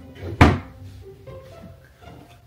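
A single loud thump about half a second in, over background music.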